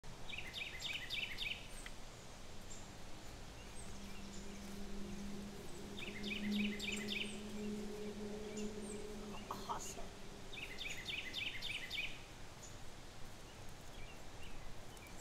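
A bird calling: a quick run of high repeated notes, given three times about five seconds apart. A steady low hum runs underneath through the middle.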